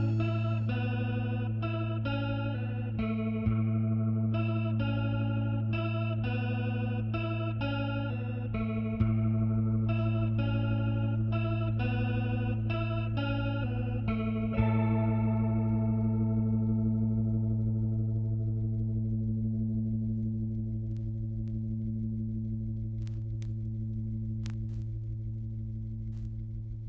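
Instrumental music: an electric guitar picks repeating notes over a steady low drone, with a few louder accented notes. The picking stops about fifteen seconds in, leaving the drone ringing on and slowly fading.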